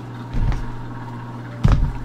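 Two dull, low thumps about a second apart as the torn-apart Nike running shoe is handled, over a steady low hum.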